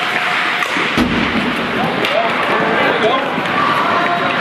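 Ice hockey rink during play: a steady murmur of spectators' voices over the game noise, with one heavy thump about a second in.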